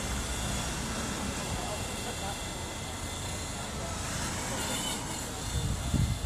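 Indistinct distant voices over a steady low rumble.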